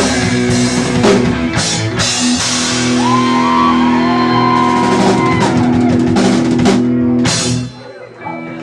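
Live rock band playing: drum kit, electric guitar and bass guitar. The band stops together near the end.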